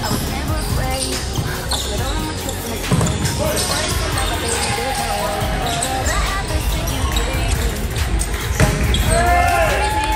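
Volleyball rally in a gymnasium: a series of sharp thuds as the ball is struck and played, with players' voices calling out in the hall.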